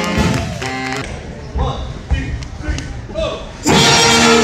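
School jazz band with saxophones and brass: held horn notes stop about a second in, leaving a thinner stretch with a few thumps and some voices, then the full band comes back in loudly on sustained chords near the end.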